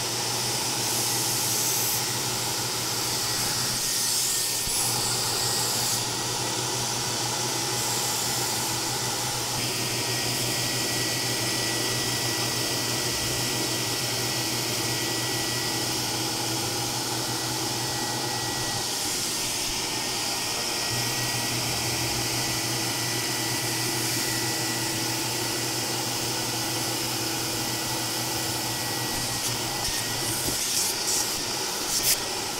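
Mytee 8070 Lite hot-water carpet extractor running, its vacuum motor drawing steadily with a thin whistle and a hiss as the upholstery tool sucks heated solution back out of a carpet mat. The tone shifts slightly a few times as the tool is moved across the mat.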